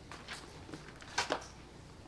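Hymnbook pages being leafed through close to a lectern microphone: faint paper rustles, with two short, sharper rustles just past the middle.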